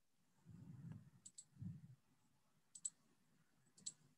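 Near silence with three faint double clicks, roughly a second and a half apart, and two soft low rumbles in the first two seconds.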